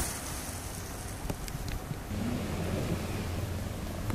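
Wind buffeting the microphone outdoors, an even rushing noise. About halfway through, a steady low hum joins in.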